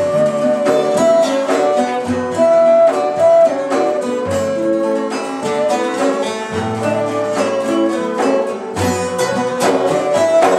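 Small Turkish folk ensemble playing live: ney flute and strummed bağlamas (saz) carry a stepwise melody over quick, even plucking, with deep bendir frame-drum strokes every couple of seconds.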